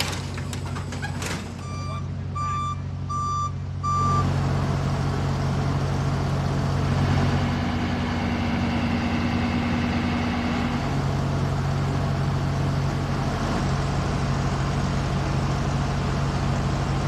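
A vehicle's reversing alarm beeps four times in a steady rhythm, one high beep about every 0.7 s, in the first few seconds. Under it runs the steady low hum of an idling engine.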